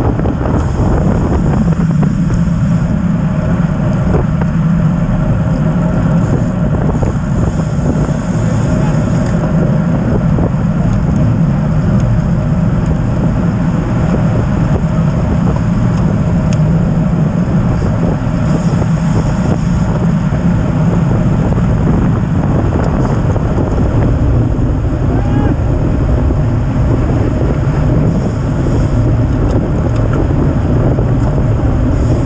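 Steady wind rushing over a bike-mounted action camera's microphone at about 25 mph, mixed with the hum of tyres on the road.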